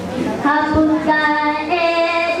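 Children singing dikir barat together in long, held notes. The singing breaks briefly at the start, resumes about half a second in and steps up to a higher note near the end. A single low thump sounds under the voices a little before the one-second mark.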